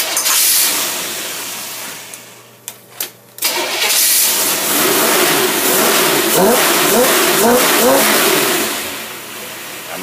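Engine on a test stand, fed by a Predator racing carburetor, free-revving with no load. A first rev at the start dies back over a couple of seconds, then about three and a half seconds in it is revved again and held for several seconds, the pitch rising and falling with the throttle.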